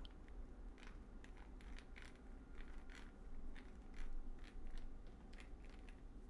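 Computer keyboard being typed on: faint, irregular key clicks, roughly two a second.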